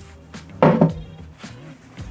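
A lint-free cloth wiping a loose glass plate damp with anti-static glass cleaner, with one louder rub a little over half a second in, over quiet background music.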